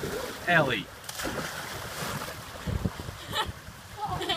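A child jumping off a boat splashes into the sea about a second in, just after a short high shout. Wind buffets the microphone, and there is a second, lighter splash near the end.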